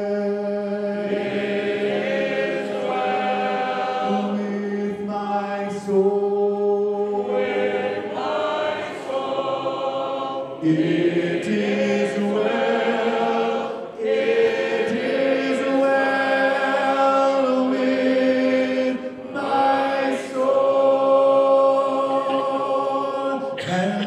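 A large congregation singing a hymn a cappella in parts, with long held notes and short breaks between phrases, led by one man's voice through a microphone.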